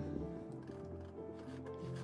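Music playing at a low level from the car's stereo, with long held notes, while the radio volume knob is turned.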